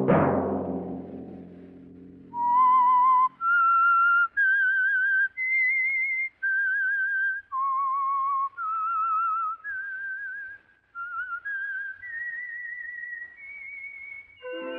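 A loud orchestral chord with timpani strikes at the start and rings away over about two seconds, closing the drama. Then a lone whistler carries the show's slow signature theme: separate notes with a wavering vibrato, the last ones held longer.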